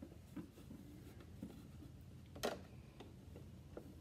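Scissors snipping loose threads from a sewn cloth mask: faint handling noise with a few light clicks, and one sharper snip about two and a half seconds in.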